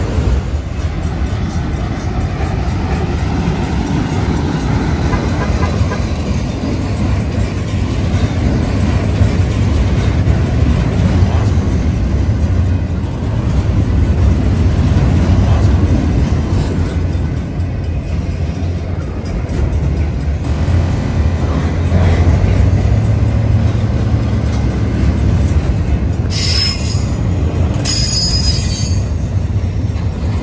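Freight train of autorack and double-stack intermodal cars rolling past close by: a steady, loud rumble of steel wheels on the rails. Near the end come two short high-pitched wheel squeals.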